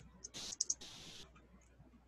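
A few soft computer keyboard keystrokes, clicking together with short scratchy bursts, in the first second or so.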